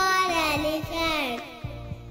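A children's phonics song: a child-like voice sings one long note that bends in pitch and ends about a second and a half in, over a backing track with a steady beat.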